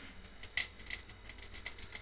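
Green chillies frying in hot oil in a kadai, crackling and spattering in quick, irregular pops.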